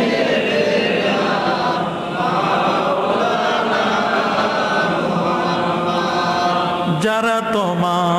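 A preacher's voice chanting a long melodic line into a microphone, the notes held and wavering with ornaments. From about two seconds in the sound turns blurred and echoing, and a clear solo voice returns about seven seconds in.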